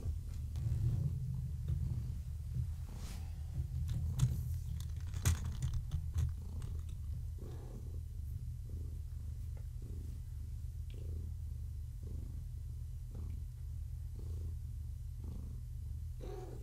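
Domestic cat purring steadily, a low continuous rumble that pulses faintly about once a second. A few small clicks and knocks in the first half.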